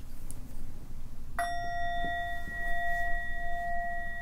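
A meditation bell is struck once about a second and a half in and rings on steadily with a clear, pure tone.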